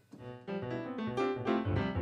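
Electronic keyboard played with a piano sound, a run of notes, heard through the studio speakers after being routed through the audio interface and computer.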